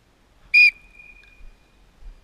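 A starter's whistle gives one short, sharp blast about half a second in, signalling the start of the race, and a faint tone lingers after it.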